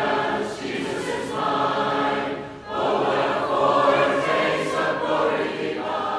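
Choir singing intro music in long held phrases, with a short break about two and a half seconds in.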